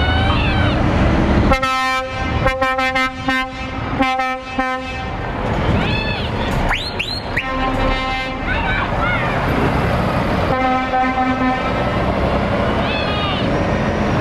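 Lorry air horns sounding a string of short toots, then two longer blasts, over the low running of diesel truck engines as the trucks pull away.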